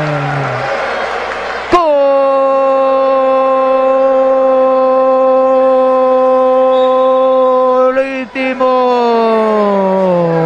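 A TV commentator's long, drawn-out "gol" cry. A sudden shout about two seconds in becomes one held note of about six seconds, which breaks near the end and slides down in pitch.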